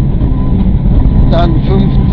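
Mitsubishi Lancer Evo IX rally car's turbocharged four-cylinder engine running hard at stage speed, heard from inside the cabin. The sound is loud and steady.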